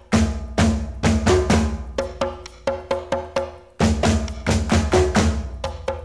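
Conga drums played with bare hands in a busy rhythm of several strokes a second, over a low bass, in an instrumental break of a vallenato-style song. The drumming drops out for a moment a little past the middle.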